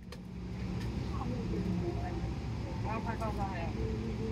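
Steady low rumble of a Boeing 777-300ER cabin in flight, with faint talking over it.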